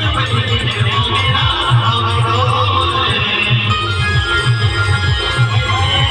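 Loud band music played over a loudspeaker system: a heavy repeating bass beat under a high, sustained melody line.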